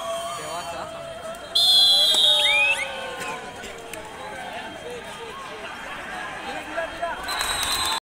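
Referee's whistle: one loud, steady shrill blast lasting just over a second, signalling the end of a raid after a tackle, and a second, fainter blast near the end. Players and spectators shout underneath.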